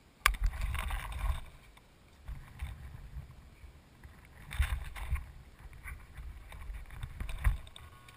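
Wind buffeting the camera's microphone in irregular low rumbling gusts, with a sharp click just after the start. The tricopter's motors are not running.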